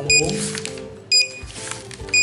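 Opticon OPR-2001 handheld barcode scanner giving two short, high-pitched beeps about a second apart. Each beep is a good-read signal confirming that a programming barcode from the setup manual was read. Background music runs underneath.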